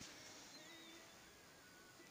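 Near silence: room tone, with a few faint, thin wavering high tones.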